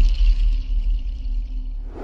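Channel ident music ending on a deep bass rumble, with high shimmering tones that fade out about a second in; the whole sound slowly dies away.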